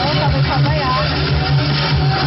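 Band music playing on with a steady bass line, and a wavering, gliding voice-like line over it for about the first second.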